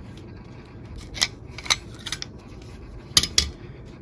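A few small sharp clicks of a CR2450 coin-cell battery being popped out of its metal clip holder on a garage door sensor's circuit board and handled, with two clicks close together near the end.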